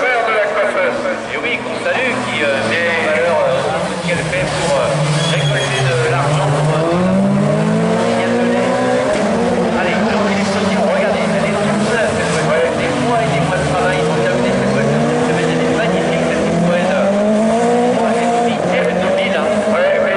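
Several Division 4 rallycross cars racing, their engines revving hard. The pitch climbs and drops again and again with gear changes and lifts for corners.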